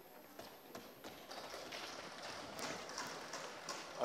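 Faint, irregular tapping and knocking across a large chamber, thickening after about a second: members thumping their desks in welcome.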